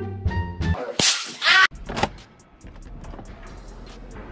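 Background music breaks off, and about a second in a short, loud whoosh transition sound effect sweeps through and cuts off sharply. Only faint room sound follows.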